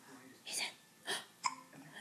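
Three short breathy vocal sounds from a baby, each under a second apart.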